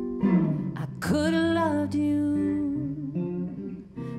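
A woman singing a slow ballad into a microphone, with a long sung phrase about a second in, over an electric guitar accompaniment.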